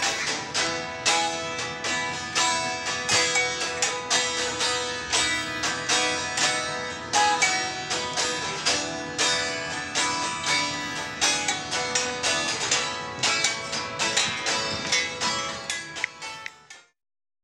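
Two electric guitars, one a Les Paul-style with a Bigsby vibrato, strumming chords together in a steady rhythm, running through a song's chorus.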